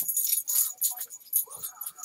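A stack of 1986 Fleer baseball cards being handled and slid against one another: a run of quick, light clicks and scrapes.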